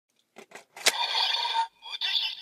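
Bandai DX Evol Driver toy belt: a few plastic clicks as a bottle is seated in its slot, the last the sharpest, then the toy's speaker answers with an electronic voice call and sound effect that ends in a short rising sweep.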